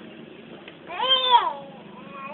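A young child's voice giving one high-pitched, drawn-out call about a second in, rising and then falling in pitch.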